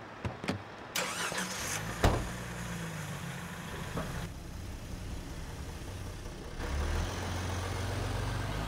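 A car door shuts with a sharp knock about two seconds in. A minivan's engine then runs steadily and grows louder about seven seconds in.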